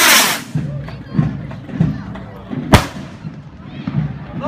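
A musket fires a blank charge straight up: one very loud bang with a long blast at the start. A second, sharper bang follows near three seconds in.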